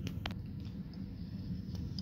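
Cricket bat being slid through a bat-size gauge to check that it is legal: a couple of light clicks about a quarter of a second in, then faint low handling rumble.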